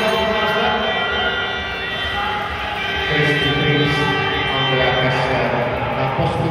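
Spectators cheering and shouting in an ice rink arena, many voices overlapping in a steady din, with louder held yells in the second half.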